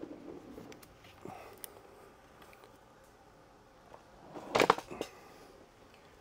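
Mobility scooter being tipped over onto its back: light knocks and rattles from its body and frame, then a short, louder clatter a little over four seconds in as it is set down.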